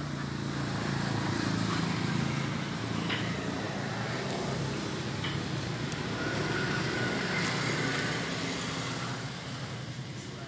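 A motor vehicle's engine running with a steady low hum over a bed of background noise, swelling a little at the start.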